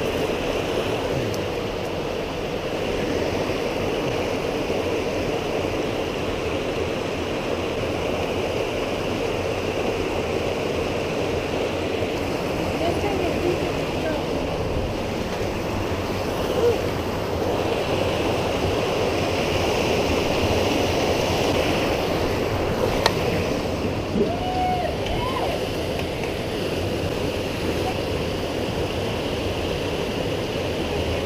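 A mountain creek rushes steadily over rocks and small cascades. There is a single sharp click a little past two-thirds of the way through.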